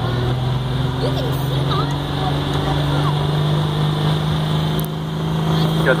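Dodge 2500 turbo-diesel pickup pulling a sled under full load, the engine held at high revs in a steady drone.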